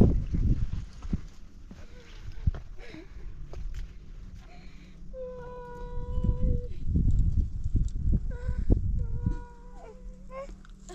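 Two long, even calls from a farm animal, the first held about a second and a half a little past the middle, the second shorter near the end, over a low rumble.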